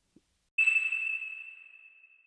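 A single high-pitched ping, struck about half a second in, ringing as one clear tone that fades away over about two seconds.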